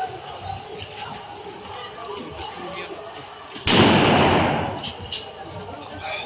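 A single sudden loud bang a little past halfway, ringing on and dying away over about a second. Scattered short sharp knocks sound under a low background of distant voices.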